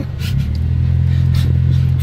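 Low rumble of a car heard from inside the cabin, swelling a little under half a second in as the car accelerates, then holding steady.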